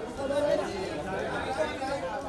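Several voices talking and calling out over one another: photographers shouting directions to the person they are shooting.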